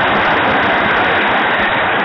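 Stadium crowd cheering a goal: a steady, dense wall of voices with no single voice standing out.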